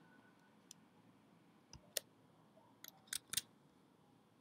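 Scattered, faint clicks of a computer mouse and keyboard: single clicks about a second in and near two seconds, then a quick cluster of clicks around three seconds in.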